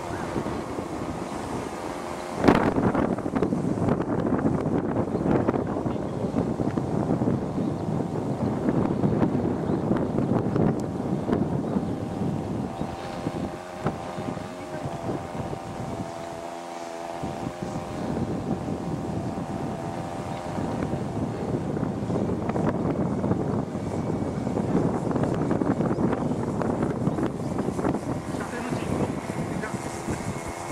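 Radio-controlled scale model of a Ki-84 Hayate fighter in flight, its engine droning steadily with the pitch wavering up and down as the plane turns and passes. The sound gets suddenly louder about two and a half seconds in and dips briefly in the middle, with wind noise on the microphone.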